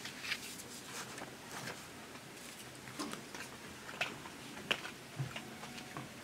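Papers being handled, with scattered light clicks, taps and rustles and a few sharper knocks, against quiet room tone.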